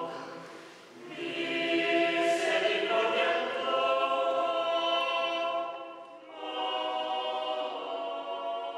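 Mixed choir of men's and women's voices singing unaccompanied in long held chords. The phrases break off briefly about a second in and again around six seconds.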